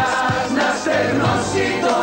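Several singers singing together over pop backing music, holding long notes.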